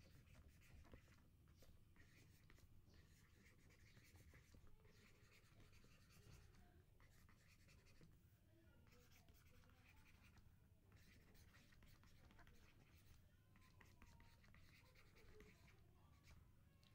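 Faint scratching of a stylus writing on a tablet, in short runs of strokes with brief pauses between words, over a faint low hum.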